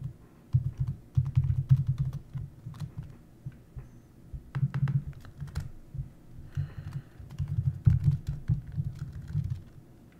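Laptop keyboard being typed on in irregular bursts, each keystroke a click with a dull low thud.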